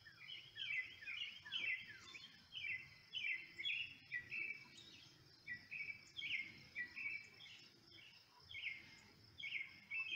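Small birds chirping in quick, repeated short notes, two or three a second, over a steady high-pitched insect drone.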